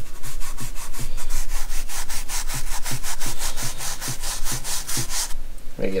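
A toothbrush scrubbing back and forth over a vehicle interior part soaked in Purple Power degreaser, in quick, even strokes several times a second. The scrubbing stops about five seconds in.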